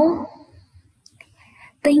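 Speech only: a voice trailing off at the start and starting again near the end, with a short, nearly quiet pause between.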